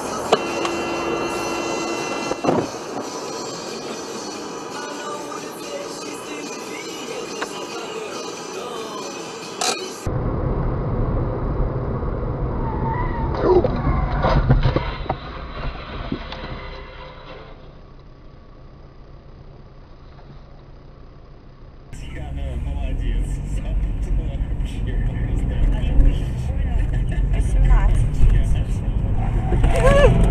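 In-car dashcam audio that changes abruptly at cuts between clips: music and voices at first, then engine and road rumble with voices.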